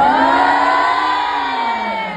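A crowd screaming and cheering together in one long high "woo" that swells at once and slowly sinks in pitch.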